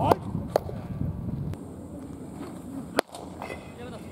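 Sharp leather pops of a hard-thrown baseball smacking into a catcher's mitt: one just after the start and another about three seconds in.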